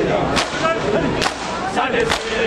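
A large crowd of bare-chested men beating their chests in unison (matam). Their open-hand slaps land together as sharp claps about every 0.85 seconds, twice here, with the crowd's voices in between.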